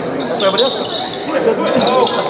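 A basketball being dribbled on a hardwood gym floor during play, with short high sneaker squeaks about half a second in and again near the end, over voices from the court and sidelines.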